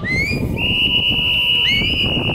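A steady high-pitched whistle-like tone, held for about two seconds, with short rising chirps just before it starts and again near the end.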